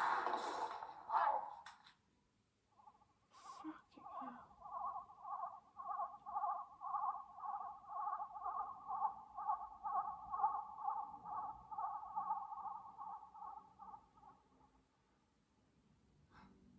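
Science-fiction TV sound effects: a short burst of hiss and crackle, a few clicks, then a pulsing two-tone electronic warble, about two pulses a second, that fades out near the end.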